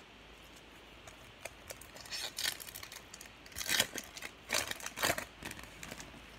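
Foil wrapper of a 2019 Topps Opening Day card pack being torn open and crinkled by hand: a run of sharp crackling rips starting about a second and a half in.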